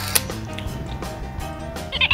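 Background music with held notes over a steady low rhythm.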